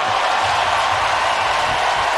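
Large arena crowd cheering and clapping in a steady roar.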